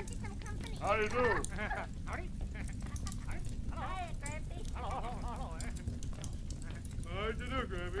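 Old cartoon soundtrack: characters' voices calling out short greetings with exaggerated, sliding pitch, over the steady low hum and scattered crackle of an early film sound track.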